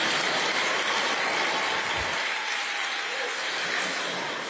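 A crowd applauding: steady clapping that eases off slightly toward the end.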